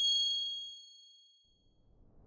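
A single bright metallic chime struck once, ringing in several high tones at once and fading away over about a second and a half: the ding of a logo sting. A soft whoosh begins to swell near the end.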